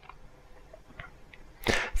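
A short pause in a man's talk: quiet room tone, then a sharp intake of breath near the end, just before he speaks again.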